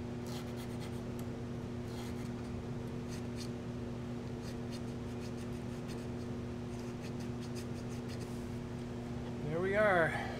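Hand file rasping in short strokes as it opens up the strap hole in a prop binocular housing, over a steady hum. The strokes come in the first few seconds and briefly again near the end, where a voice rises and falls.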